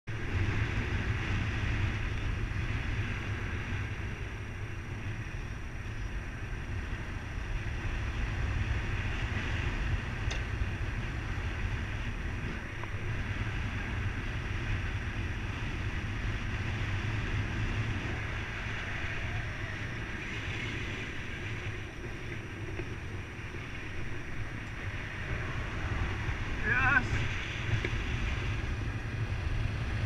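Airflow of paraglider flight buffeting the action camera's microphone: a steady low wind rumble with a hiss above it. Near the end a brief wavering high tone cuts through.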